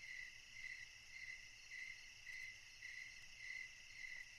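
Faint cricket chirping, a steady run of about two chirps a second over a low night-time hiss.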